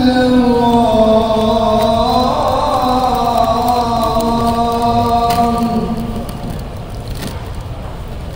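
A man's voice chanting in long, held, slowly gliding notes, as in the salawat chanted over the mosque a little earlier. The phrase fades about six seconds in.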